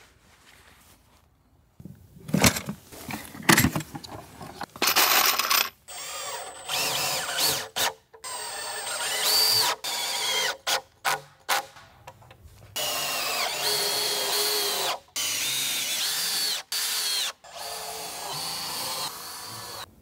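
Makita 18V cordless drill-driver driving screws into timber planks in a series of short and longer runs, the motor whine rising in pitch as each run spins up and cutting off between screws. A few sharp knocks come before the first run.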